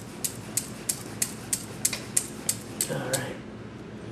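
Wire whisk beating batter in a stainless steel mixing bowl, the wires clicking against the bowl about three times a second and stopping about three seconds in.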